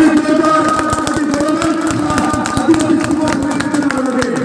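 A group of people clapping their hands, many irregular claps, over music with a long held melody line.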